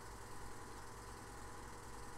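Steady, faint low hum with background hiss, the recording's room or equipment noise in a pause between speech.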